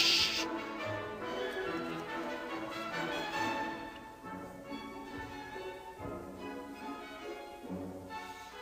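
Orchestral classical music playing held, sustained notes, growing softer about halfway through.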